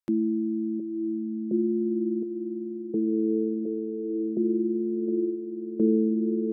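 Opening of an instrumental trap beat: soft, pure-sounding synth tones held as low chords, with a new note or chord about every three quarters of a second. No drums yet.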